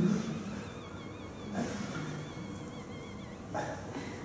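Sound from the Tinybop human-body app playing over the room speakers: a wavering high electronic tone held over a low background, opening with a short loud low burst, with soft knocks about one and a half and three and a half seconds in.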